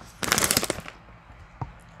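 A snack pouch being pulled open: one quick crackling rip of the packaging, about half a second long, shortly after the start.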